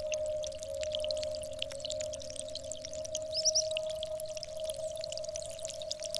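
Experimental electronic music: a steady held drone tone in the middle range, with a slight beating in it, over scattered faint high crackles and clicks, and a short high chirp about three and a half seconds in.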